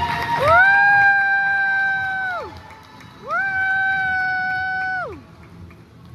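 A horn sounds two long blasts about a second apart. Each blast slides up in pitch as it starts, holds one steady note, and sags down as it dies away.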